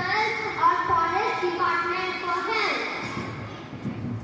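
A child's voice speaking in drawn-out, sing-song phrases, trailing off about three seconds in.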